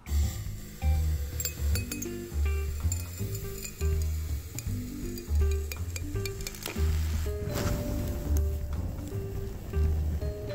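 Background music with a steady beat over the clinks and sizzle of liquid methane being poured from a steel vacuum flask into a glass jar and boiling off. About seven seconds in, a short rush of noise as the methane vapour catches fire.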